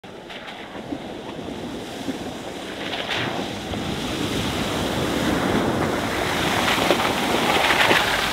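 Water splashing and rushing from the tyres of an electric pickup truck, a 2023 Ford F-150 Lightning, as it drives through a shallow trail water crossing. The sound grows steadily louder as the truck comes through the water toward the microphone.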